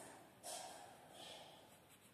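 Near silence: faint room tone, with a soft breathy rustle about half a second in.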